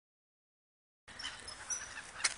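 Silence for about a second, then faint outdoor background noise with a few brief, high bird chirps.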